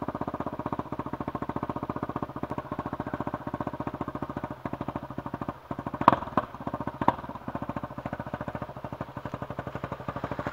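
Dirt bike engine running steadily at low revs, near idle, while the bike is worked up a steep trail. Two sharp knocks stand out about six and seven seconds in.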